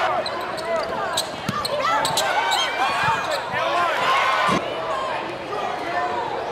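Live basketball game sound in a gymnasium: a loud crowd with many overlapping voices, a basketball bouncing on the hardwood court several times, and sneakers squeaking as players run.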